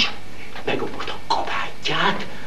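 A man's voice making a few short vocal sounds with no clear words, spaced unevenly through the two seconds.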